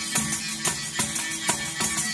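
Tambourine with jingles struck and shaken in a steady folk rhythm, about three beats a second, joined by a second hand percussion instrument, with no singing.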